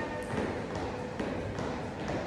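Trainers tapping on a tiled floor in a steady rhythm, about two taps a second, as the feet land in turn during mountain climbers.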